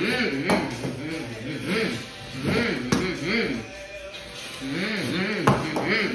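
A boy humming in repeated rising-and-falling swoops, the 'mm, mm, mm' he makes while driving toy monster trucks through a sand table. Three sharp knocks from the toy trucks break in about half a second in, near the middle and near the end.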